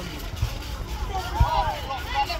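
Distant voices calling out, faint and pitched, about a second in, over a low rumbling background of outdoor noise.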